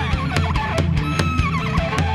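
Live rock band music: an electric guitar plays a lead line with bent, gliding notes over bass and a steady beat.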